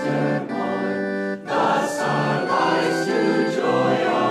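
Mixed choir singing a hymn over sustained keyboard chords. After a brief dip a little way in, the singing comes in fuller.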